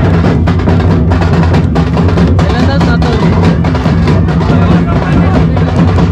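Dhol drums beaten in a loud, steady, dense rhythm, with voices from the crowd mixed in.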